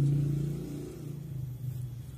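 A motor vehicle engine passing by, loudest at first and then fading away.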